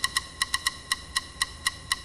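A small percussion instrument tapping short, high, slightly ringing clicks in a quick, steady repeating rhythm, about two groups of beats a second.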